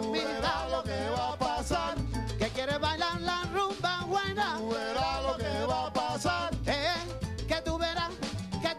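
Salsa band playing: melodic lines that slide up and down over a walking bass line and steady percussion.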